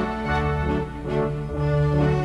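Background music of sustained chords over a stepping bass line.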